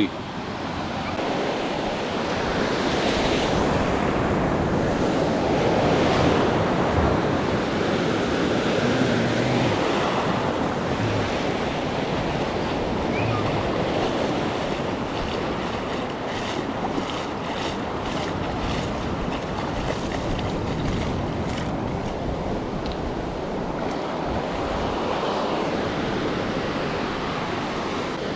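Ocean surf breaking and washing up a sandy beach in a steady rush, swelling loudest about six seconds in.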